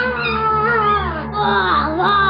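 A young child's wailing voice, sliding up and down in pitch, over a steady low background music drone.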